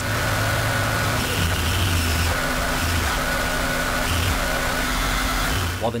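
An excerpt of Japanese noise music (Japan Noise): a loud, unbroken wall of harsh noise with a faint steady drone and a low rumble that shifts in and out, cutting off near the end.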